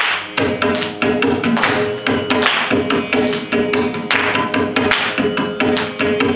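Carnatic music: a mridangam played in dense, quick strokes under a bowed violin melody, over a steady shruti box drone.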